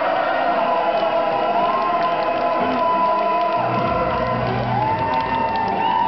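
Live band's amplified stage sound: sustained instrument tones held steady, with crowd cheering underneath. A low bass tone comes in about three and a half seconds in.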